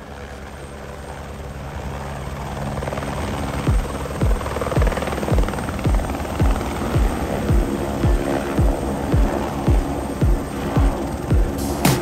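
A single-engine turbine helicopter, an AS350-type A-Star, running close by as it hovers low and sets down on the pad, its rotor and engine noise growing louder over the first few seconds. Background music with a steady beat of about two thumps a second comes in over it partway through.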